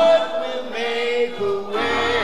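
A choir sings a slow church hymn in long held notes with vibrato, over a steady low accompaniment.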